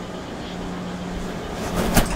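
Steady low hum of room ambience, then a metal door's handle and latch clicking near the end.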